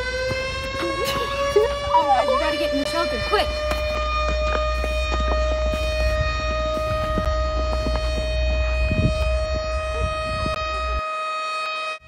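Air-raid siren sounding, its pitch rising at first and then holding steady on one tone. Girls' voices shout over it during the first few seconds.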